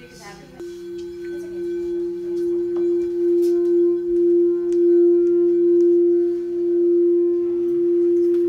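Frosted quartz crystal singing bowl sung by circling a wand around its rim. It gives one steady pure tone that swells over the first few seconds and then holds, its loudness wavering slowly.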